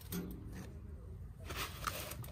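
Rustling of torn fabric on a folding lounge chair being handled, loudest near the end. A brief murmur of voice comes just after the start.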